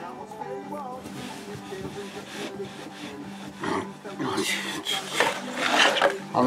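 Steel screw of a bottle stopper jig being twisted by hand into the centre hole of an ash bowl blank, rasping against the wood in short strokes that grow louder in the last two seconds. Steady background music runs underneath.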